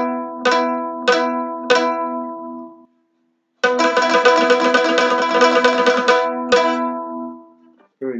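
Mandolin sounding an E and B double stop, a consonant, resonant fifth. It is struck four times about half a second apart, each stroke ringing on, then after a short pause the same pair is played with about three seconds of rapid tremolo picking, ending on one more stroke that rings out.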